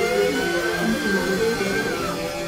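Live band with horns and electric guitar playing: one long held high note that ends near the close, over shifting lower notes.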